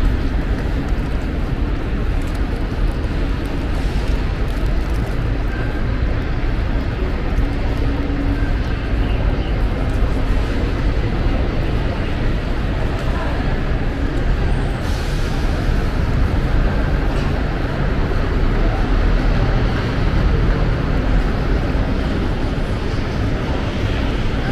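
Steady low rumble of road traffic and outdoor airport ambience, with faint voices, and a short hiss about fifteen seconds in.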